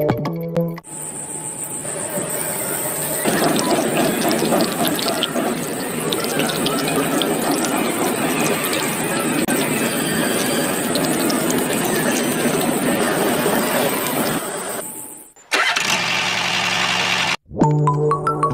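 Miniature DC-motor water pump running steadily with a thin high whine, water pouring and splashing from its pipe into the soil bed. It starts about a second in and stops suddenly about fifteen seconds in.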